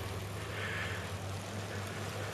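A steady low drone, like a motor vehicle's engine, under an even outdoor noise haze.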